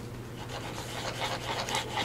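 Faint rubbing and handling noise of hands on vellum and paper while a plastic bottle of white glue is squeezed onto the page, over a steady low electrical hum.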